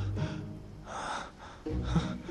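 A man's startled gasp, a short sharp intake of breath about a second in, over background music with a low bass line.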